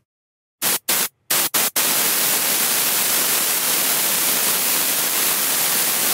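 Air hissing like bagged air-ride suspension airing up to lift a lowered mini truck: five quick short bursts, then a steady hiss.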